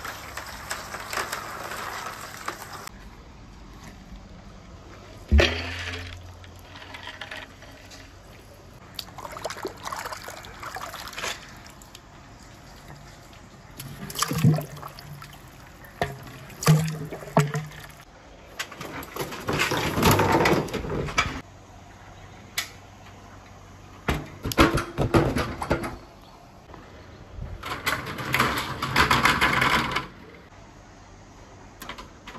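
Glass marbles rolling and clacking along a wooden marble-run course, in several separate bursts, with a sharp knock about five seconds in.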